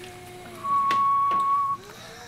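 A single steady, high, whistle-like tone lasting about a second, starting just over half a second in, with faint voices around it.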